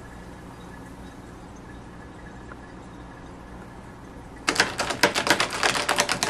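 Quiet room tone, then about four and a half seconds in a fast, uneven run of sharp clicks and clinks: ice cubes rattling against the glass jar as the iced coffee is stirred.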